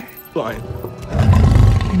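A lion roaring once, deep and loud, starting about a second in, over background film music.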